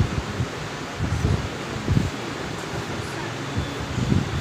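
A marker writing on a whiteboard, heard as a few dull low knocks about a second, two seconds and three and a half seconds in, over a steady room hiss.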